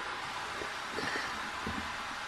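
A few faint, soft knocks from a metal measuring cup as flour is poured into a plastic bowl and the cup is dipped back into a flour bin, over a steady hiss.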